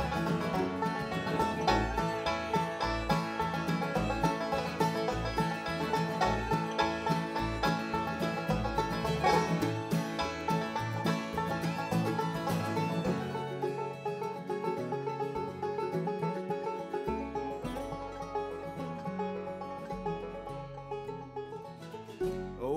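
Bluegrass band playing an instrumental break on banjo, acoustic guitar, mandolin and upright bass, with quick plucked notes over a pulsing bass line. Past the middle the bass drops out for a few seconds and the sound thins before the bass comes back.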